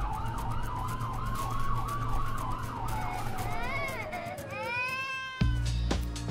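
A siren wailing, its pitch slowly rising and then falling with a fast warble over it, followed by a few short arched tone sweeps. About five and a half seconds in, music with a deep bass beat cuts in.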